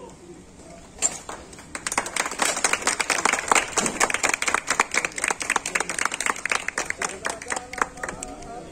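A small group of people clapping: a few claps about a second in, then steady applause of separate, distinct claps from about two seconds in, dying away just before the end.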